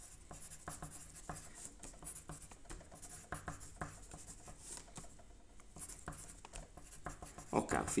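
Pen scratching on paper in short, irregular strokes: the 12-word wallet recovery phrase being written out by hand.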